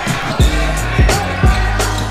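Background music with a steady beat: a kick drum about twice a second over a sustained bass line.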